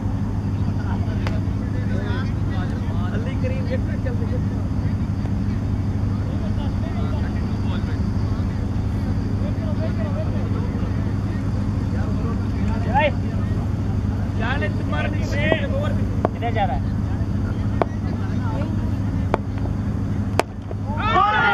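A steady low, engine-like hum with a faint mechanical drone runs throughout. Over it come faint, distant calls and shouts from players on the field, busiest about two-thirds of the way in, and a few sharp ticks near the end.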